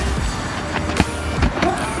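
Background music, with one sharp thud of a football being kicked about a second in.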